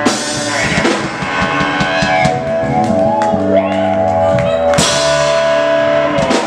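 Live rock band of electric guitar, bass and drums playing: a big cymbal-and-drum hit opens a long ringing chord, and a second crash comes about five seconds in.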